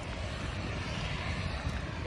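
Steady low outdoor rumble of distant road traffic mixed with wind on the phone's microphone.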